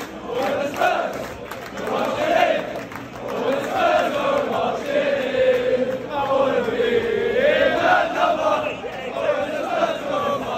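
A packed crowd of football supporters singing a chant together, one sustained melody that rises and falls.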